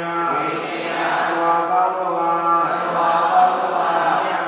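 Buddhist chanting: voices intoning in long held notes over a steady low tone.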